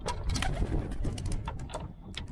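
A male domestic pigeon cooing and stirring while held in the hands, with a quick irregular run of sharp clicks and flutters over a low rumble.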